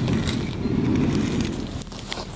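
Wind buffeting an outdoor camera microphone: an uneven low rumble.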